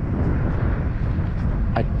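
Wind buffeting the microphone: a steady low rumble. A short word breaks in near the end.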